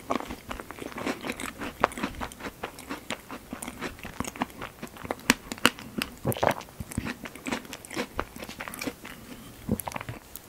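Close-miked chewing of strawberry tart with cream and pastry: a dense, uneven run of short wet mouth clicks and small crunches.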